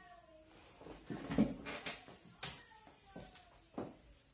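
Heeled ankle boots knocking a few times on a hard floor as the wearer gets up from a chair and steps, with faint short squeaky tones between the knocks.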